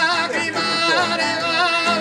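Sardinian canto a chitarra in the 'canto in re' style: a man sings a high, wavering, ornamented line, accompanied by an unamplified acoustic guitar.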